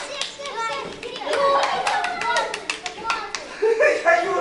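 Children's voices: chatter and calls from several kids at once, with a few short knocks.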